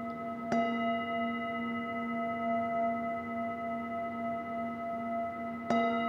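Metal Tibetan singing bowl resting on a person's knee, struck with a mallet about half a second in and again near the end, ringing on steadily with a low hum and several higher overtones.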